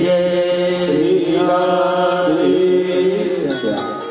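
Indian devotional song sung in long held notes that glide and waver, over a steady sustained drone; it thins out just before the end.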